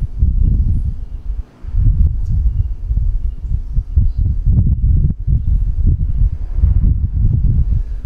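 Loud, uneven low rumbling and buffeting on the microphone, dropping out briefly about one and a half seconds in.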